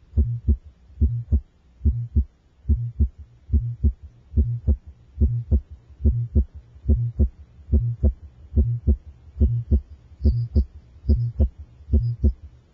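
A child's heart beating at about 95 beats a minute with Still's murmur: a low, vibratory hum fills the gap between the first and second heart sounds of every beat. Still's murmur is an innocent murmur, a common finding in normal children.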